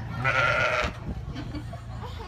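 A sheep bleating once, a short call of just over half a second.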